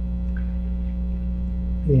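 Steady electrical mains hum, a low buzz made of several evenly spaced tones, heard in a pause in the talk. Speech starts again near the end.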